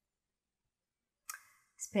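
Dead silence for over a second, then a short click and breath, and a woman starts speaking near the end.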